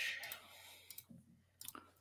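A few faint, short computer clicks, like a mouse being clicked, over a very quiet room, with a soft hiss fading away at the start.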